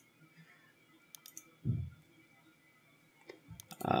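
A few faint, sharp computer mouse clicks against quiet room tone, with a brief low vocal sound about halfway through and speech starting right at the end.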